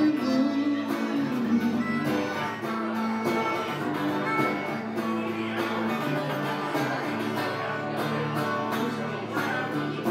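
A harmonica plays long held notes over a strummed hollow-body electric guitar, an instrumental passage with no singing.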